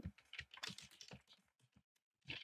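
Faint computer keyboard typing: a quick, uneven run of soft keystrokes that stops shortly before the end.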